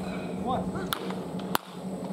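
Two sharp cracks of baseball bats hitting balls during cage batting practice, about a second in and again just over half a second later, over a steady low hum.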